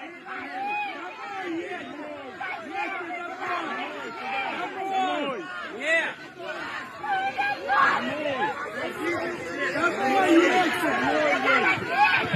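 A crowd of people talking and calling out over one another, many voices at once, growing louder near the end.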